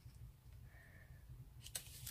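Near silence: room tone with a steady low hum and a faint click near the end.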